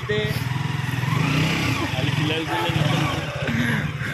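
KTM RC 200's single-cylinder engine running at low revs just after being started, as the motorcycle pulls away; voices talk over it.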